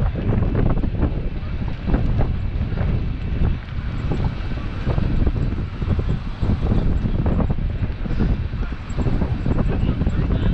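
Wind buffeting the microphone of a camera riding on a moving vehicle, a constant uneven rumble with vehicle and road noise underneath.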